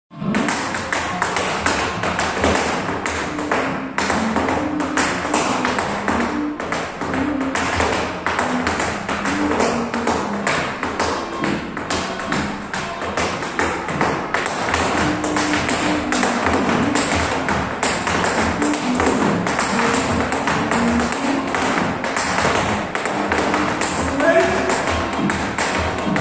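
Tap shoes striking a hard studio floor in quick, dense rhythmic patterns, danced over recorded music with a melody.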